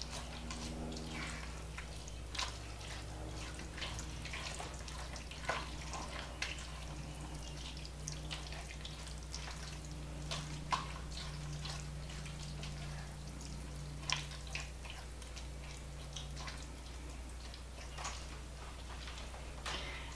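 Spatula stirring a thick, wet squash casserole mixture in a pot: irregular soft wet smacks and clicks. A steady low hum runs underneath.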